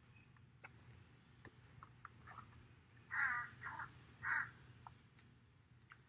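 A bird calling three times in quick succession, each call short. Before the calls come a few faint clicks and rustles as a page of a spiral-bound book is turned.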